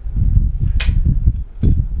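Hard plastic parts of a battery LED puck light being handled and pulled apart. There is a sharp plastic click a little under a second in and a smaller one near the end, over low handling thumps.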